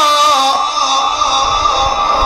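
A male Quran reciter's melodic, sung recitation: a held note with wide vibrato glides down and ends about half a second in, its tones lingering on in the loudspeaker echo. A low rumble begins to build near the end.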